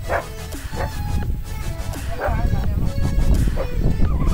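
A dog giving a few short, high yelps over background music.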